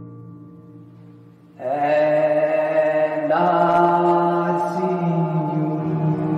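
Digital keyboard playing slow, sustained chords with a dark pad-like voice. A fading chord dies away, a loud new chord comes in about one and a half seconds in, and it changes again about halfway through.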